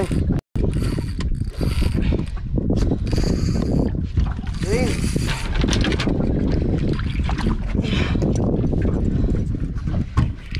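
Spinning fishing reel being cranked under heavy load while a hooked fish pulls the rod hard over, a whirring, rasping winding repeated in short spells over a steady low rumble.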